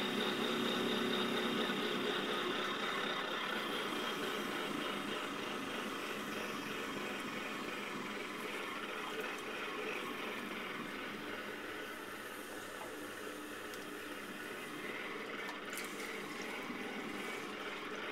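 Potter's wheel running steadily with a hum as wet clay is thrown on it, gradually getting quieter over the first dozen seconds.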